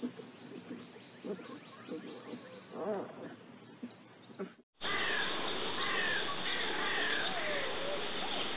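Outdoor bird calls and chirps, short sliding notes over a soft background. About two thirds of the way through, the sound cuts off abruptly and switches to a louder recording with a steady hiss and more bird calls.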